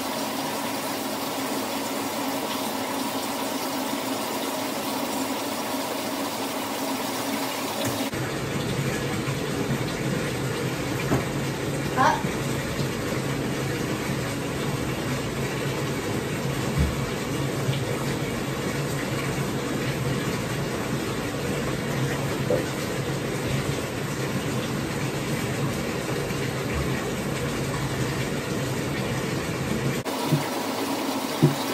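Water from a tap running steadily into a bathtub, with a few small knocks and splashes. The sound of the water changes abruptly about eight seconds in.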